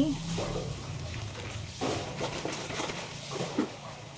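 Faint rustling and handling sounds as a soft bread bun is squeezed and handled close to the phone's microphone, with a few small scrapes, over a low steady hum.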